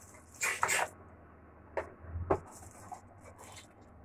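Small plastic accessory parts and packaging being handled: a rustle about half a second in, then a few light clicks and taps.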